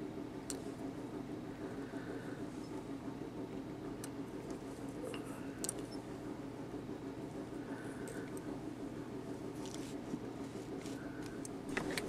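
Quiet room tone: a steady low hum, with a few faint light clicks scattered through it as the metal tube and the vise's mandrel pin are handled.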